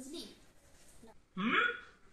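Short voiced utterances from a person: a brief one at the start, then a louder one of about half a second with rising pitch about one and a half seconds in.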